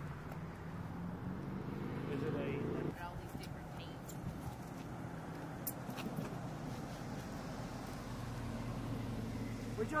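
A vehicle engine running steadily. Its pitch rises slightly before it cuts off about three seconds in, after which a lower hum continues with a few faint clicks.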